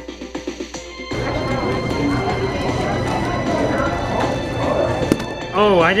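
Background music with a steady beat cuts off about a second in, giving way to the murmur of a busy competition room and the clicking of an FTO puzzle being turned. Near the end comes one sharp slap, the hands stopping the stackmat timer, and then a voice.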